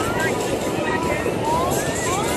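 Steady noise of jet aircraft flying an aerobatic display overhead, mixed with the chatter of crowd voices.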